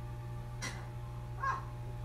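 Steady low hum of an aquarium air pump, with the bubbling of its air stone. A sharp click comes about two-thirds of a second in, and a short cry rising and falling in pitch comes about a second and a half in.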